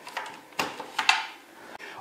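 A few short clicks and knocks of plastic and metal as the riving-knife lever and the clear plastic blade guard of a Metabo TS 254 table saw are worked by hand. The loudest knock comes about a second in.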